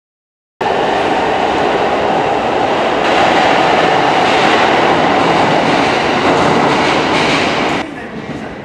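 A JR Joetsu Line train running in the underground tunnel station, a loud steady rumble and rattle of the cars that starts abruptly about half a second in and cuts off just before the end.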